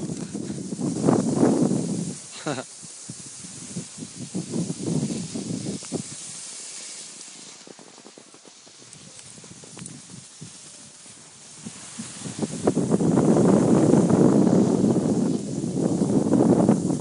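Skis scraping and hissing over snow close by, loud at the start, quieter through the middle and loud again for the last few seconds. A short laugh comes about two and a half seconds in.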